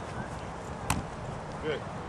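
A single sharp slap of a football caught in a receiver's hands about a second in, over steady open-air field noise. A short shout follows near the end.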